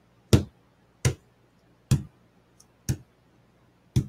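Fingers knocking on a tabletop as a makeshift drum roll: five sharp taps about a second apart, spacing out slightly towards the end.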